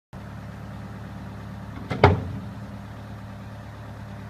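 2010 Bobcat S185 skid steer's Kubota four-cylinder diesel engine running steadily at low speed, with a sharp double clunk about two seconds in, the second one the loudest sound.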